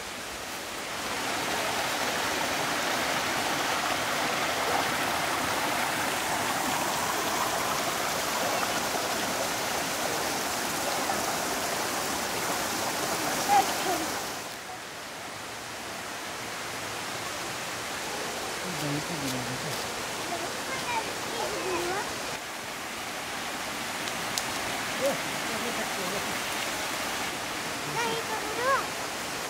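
Steady rushing of a forest stream, louder for the first half and quieter after about halfway, with brief faint voices in the later part.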